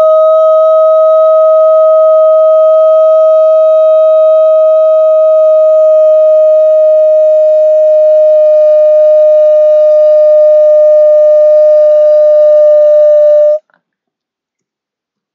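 A man's voice holding one long vocal tone on "oh", kept at a single steady, fairly high pitch for about fourteen seconds. It opens with a short upward slide into the note and cuts off sharply shortly before the end.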